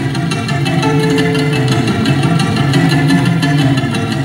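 Azorean viola da terra and acoustic guitars playing a traditional Portuguese vira together: a continuous stream of quick plucked notes in a steady rhythm, with one note held briefly about a second in.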